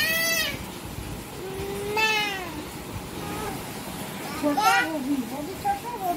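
A toddler squealing and babbling: a short high squeal at the start, a longer cry that rises and falls about two seconds in, and more broken babble near the end.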